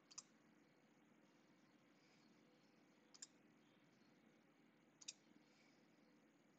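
Near silence with a few faint computer clicks: one right at the start, one about three seconds in, and a double click about five seconds in.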